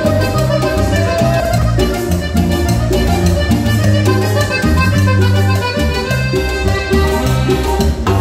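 Live band playing Latin dance music: a piano accordion carries the melody over a steady bass line and drums.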